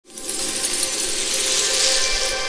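Sound effect of a shower of small crystals tinkling and clattering down, a dense glittering rattle that swells toward the end, with a faint steady tone beneath.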